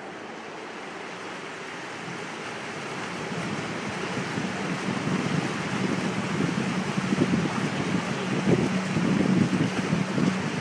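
Wind buffeting the microphone and water rushing past the hull of a small electric boat under way, growing steadily louder as it gathers speed. A faint low steady hum comes in about halfway.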